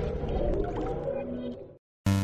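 The tail of a logo-intro sound effect: a warbling, whooshing swell that fades out, leaving a moment of silence near the end.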